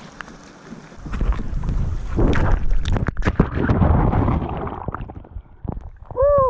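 Sea water splashing and churning close around an action camera as a swimmer goes into the sea, with crackles and a low rumble from the water and wind buffeting the microphone. It starts about a second in and fades near the end.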